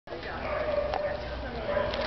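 A dog whining, a drawn-out high note held for most of a second and again near the end, over people talking in the background.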